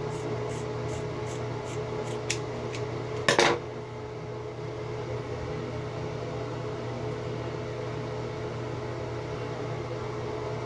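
Scissors snipping through wig fibre, about three quick snips a second for the first few seconds. A louder knock follows just after three seconds in, over a steady hum from a bathroom fan.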